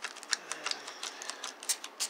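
Drops of water tapping onto a freshly spray-waxed panel in quick, irregular clicks.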